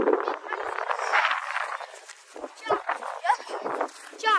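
Indistinct voices outdoors, with a few short pitched calls or shouts over a steady background noise.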